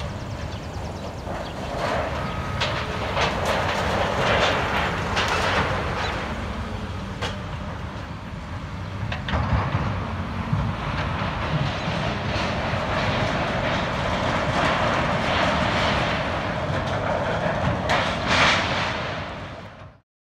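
Caterpillar hydraulic excavator running at a demolition site, with irregular metallic clanks and crashes as its grapple handles and drops scrap sheet metal into a steel roll-off container. The louder crashes come about four to five seconds in and again near the end, and the sound fades out at the very end.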